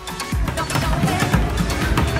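Street performer drumming rapid beats on upturned plastic buckets.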